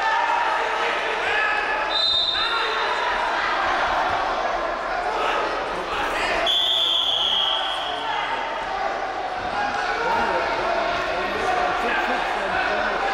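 Shouting voices from coaches and crowd in a sports hall, with occasional thuds of wrestlers on the mat. A short high whistle tone sounds about two seconds in, and a louder, longer whistle blast about six and a half seconds in as the bout's clock runs out.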